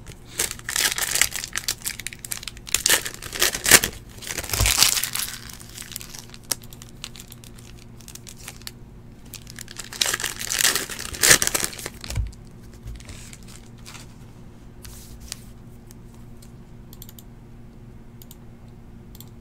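Donruss Optic basketball card pack wrappers being torn open and crinkled by hand, in two spells: from about half a second in to about five seconds, and again from about ten seconds in to about twelve; after that only faint clicks.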